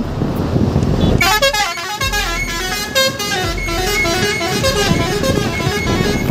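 Truck horn sounding a long run of changing notes, starting about a second in and lasting some five seconds, over road and wind noise.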